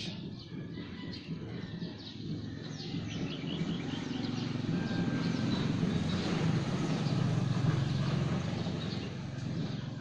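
Low rumble of a motor vehicle going by, swelling in the middle and easing near the end, with birds chirping faintly.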